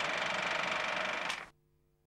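A steady hiss with a faint high whine, cutting off abruptly about one and a half seconds in, leaving silence.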